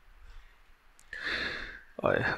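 A man's breathy sigh into the microphone, lasting under a second and starting about a second in after a near-silent pause, with a faint click just before it.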